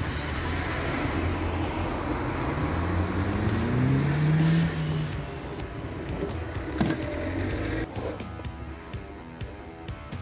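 A car engine running, with a rise in pitch about four seconds in, over background rock music with guitar; the engine sound drops away about eight seconds in, leaving the music.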